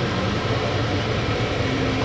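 Steady low hum with an even hiss from a running kitchen appliance.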